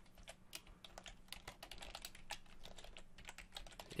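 Faint, quick, irregular keystrokes on a computer keyboard as text is typed.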